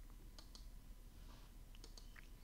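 A few faint clicks of a computer mouse, heard against near silence.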